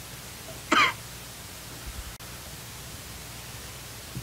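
A single short cough from a person, about three-quarters of a second in, over a steady room hiss and hum.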